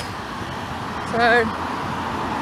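Steady noise of road traffic from a busy street.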